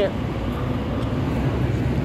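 Steady low rumble of city traffic, with no distinct events.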